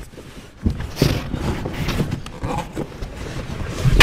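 Cardboard carton and styrofoam packing being handled as a boxed small engine is unpacked: irregular scraping, rustling and knocks, with a bright scrape about a second in and a heavier knock at the very end.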